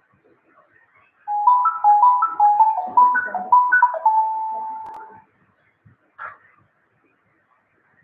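A short electronic melody of quick stepped beeping notes that jump up and down, ending on one held note that fades out, then a brief short sound near the end.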